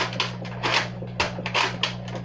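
Plastic toy gun being cocked over and over, its mechanism clacking in a quick run of sharp clicks, several a second.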